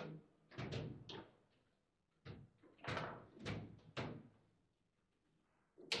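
Table football play: sharp knocks of the ball against the plastic players and the table walls as the rods are worked. A quick run of four knocks, a short pause, then four more about half a second apart, and a louder hit at the very end.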